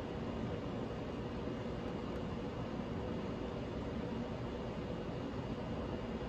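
Steady hiss of background noise with a faint high steady tone running through it and no distinct events.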